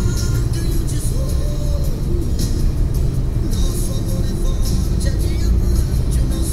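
Music playing inside a moving car's cabin over the steady low rumble of engine and tyres at highway speed.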